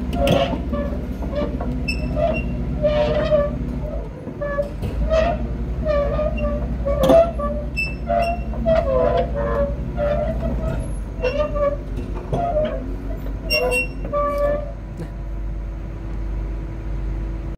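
Sumitomo SP-110 crawler pile driver's diesel engine running steadily, with many short pitched tones sounding over it, some bending in pitch.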